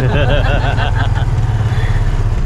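Motorcycle engine of a sidecar tricycle running steadily while riding along a street, a low continuous drone; a person's voice sounds over it during the first second or so.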